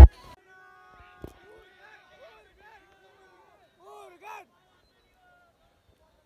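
Loud concert music cuts off abruptly, leaving near silence with faint voices and a single click about a second in.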